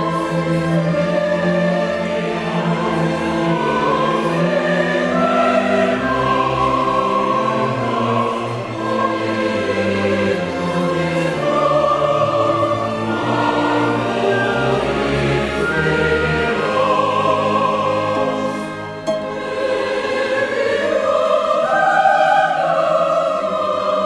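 Choir and orchestra performing a slow passage of classical oratorio music, with voices singing sustained chords over the orchestra.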